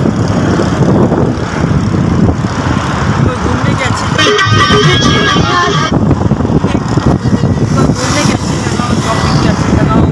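Loud wind and road rumble from a moving car with a window open. A high horn-like tone sounds for nearly two seconds about four seconds in.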